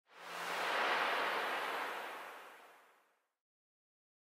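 A whoosh sound effect for a logo intro: a haze of noise swells up over about a second and then fades away, gone about three seconds in.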